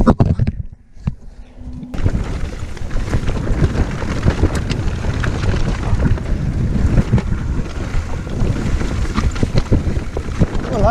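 Wind rushing over the camera microphone together with the rattling and thumping of a mountain bike riding fast over a rough dirt trail. It comes in abruptly about two seconds in, after a short quieter stretch.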